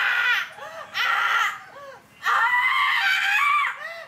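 A woman wailing in a loud, high-pitched voice, as in acted crying for a take: two short cries, then a long drawn-out one in the second half.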